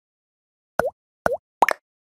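Cartoon-style 'bloop' pop sound effects from an animated subscribe-button outro: three quick pops starting a little under halfway in, each dipping in pitch and swinging back up, the last one doubled.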